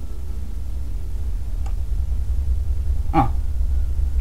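A steady low rumble in the recording's background, with a faint click a little before halfway and a brief murmur from a voice near the end.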